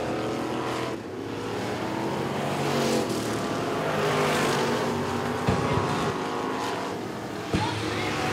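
Dirt-track street stock race car engines running hard as a pair of cars circles the oval, swelling to their loudest about four seconds in. Two short low thumps come near the end.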